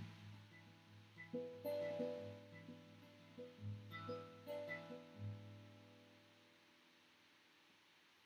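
Acoustic guitar played quietly: a handful of plucked notes and chords over the first five seconds, each left ringing, then dying away to near silence as the song ends.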